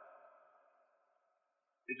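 Near silence, apart from the faint echo tail of a man's spoken word dying away; a man's voice starts again right at the end.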